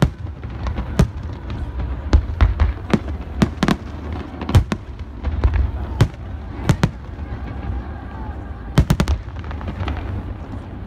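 Aerial fireworks shells bursting, a string of sharp bangs at irregular intervals with a quick run of four near the end, over a steady low rumble.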